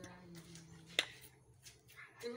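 Quiet room with a faint, steady murmur, like distant voices, and a single sharp click about halfway through.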